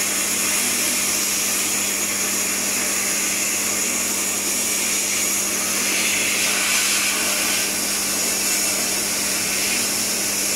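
Sandblast cabinet's blast gun hissing steadily as compressed air drives abrasive against a metal part, stripping off its paint and rust, with a steady low hum underneath. The hiss turns a little brighter for a couple of seconds past the middle.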